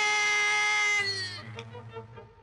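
A cartoon character's long, held scream at one steady pitch, cut off about a second in, then a faint low hum.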